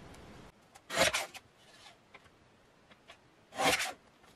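A paper trimmer's blade cutting through cardstock-weight paper scraps twice. Each cut is a short sliding stroke of under half a second, one about a second in and one near the end, with faint taps of the paper being shifted between.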